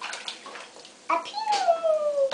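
A drawn-out, voice-like whine begins about halfway through and slides slowly down in pitch.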